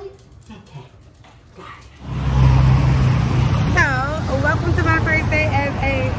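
Faint room sounds for the first two seconds, then a steady rumble of city street traffic that starts abruptly about two seconds in. A voice rising and falling in pitch is heard over the traffic from about four seconds.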